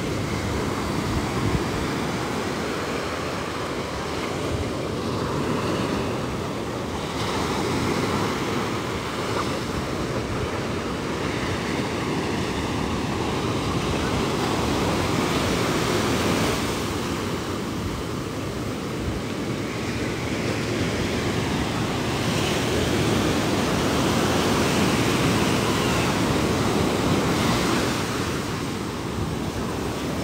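Ocean surf breaking on a sandy beach: a continuous wash of water that swells and eases as successive waves come in.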